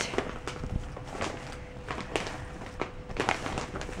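Light handling sounds: scattered rustles and taps, with a few brief noisy rustles and a faint steady hum underneath.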